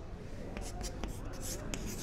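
Chalk writing on a chalkboard: a quick series of short, irregular scratches and taps as a line of working is written.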